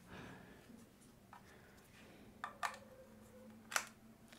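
A few faint plastic clicks and taps as a USB wireless receiver dongle is handled and pushed into a USB hub's full-size USB-A port. The sharpest click comes near the end.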